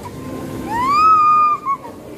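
A toddler's high-pitched vocal squeal: one call that rises and is held for about a second, ending in two short chirps.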